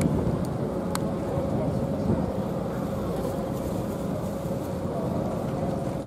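A vehicle's engine running steadily at idle, with a faint constant hum, under indistinct murmuring voices; two short sharp clicks in the first second.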